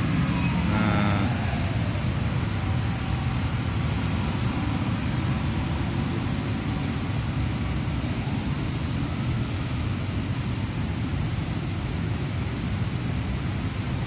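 Steady road traffic: cars driving past on the street, engine and tyre noise, with a brief high tone about a second in.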